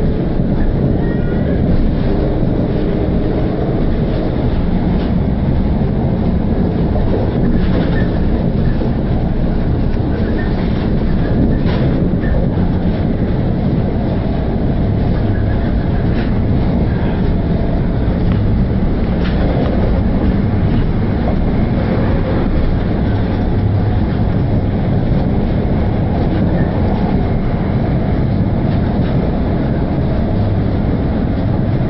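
Steady running rumble heard from inside a Northern Rail Class 333 electric multiple unit at speed: wheels running on the track, with a few faint clicks from the rails.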